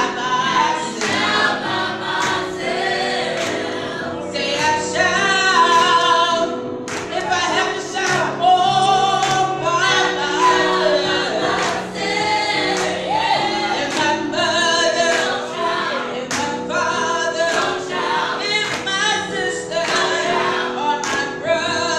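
Gospel song sung by a small group of singers, with sustained backing chords and a steady beat.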